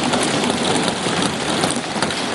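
Many members of parliament thumping their desks in applause: a dense, steady clatter of hands on wooden desks.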